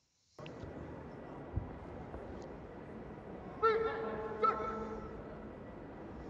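Taekwondo arena crowd hubbub from the match broadcast, with a single raised voice calling out about halfway through and a dull thump early on.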